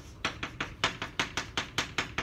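Chalk on a blackboard: a quick run of short taps and strokes, about six a second, as kanji characters are written.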